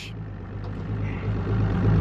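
Boat engine idling: a steady low hum that grows a little louder toward the end.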